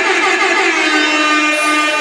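A single held electronic tone with many overtones over a club sound system, with no drums under it. It slides down in pitch at the start and then holds steady.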